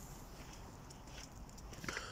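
Faint footsteps of a person walking on a wet, thawing pavement, a soft step about every half second over light outdoor hiss.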